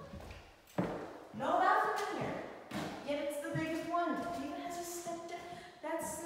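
A person's voice with long, drawn-out tones that were not caught as words, after a single thump about a second in.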